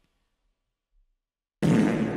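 Near silence, then about one and a half seconds in a car horn starts sounding, a steady held honk from the car behind.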